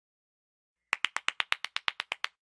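Rapid hand clapping: about a dozen sharp claps at some eight a second, starting abruptly about a second in.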